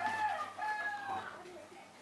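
A rooster crowing, one drawn-out crow in several segments that dies away a little over a second in.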